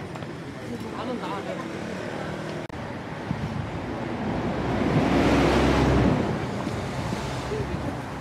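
A city bus passing close by on the street, its engine rumble and tyre noise swelling to a peak about five to six seconds in and then fading, over a background of market voices.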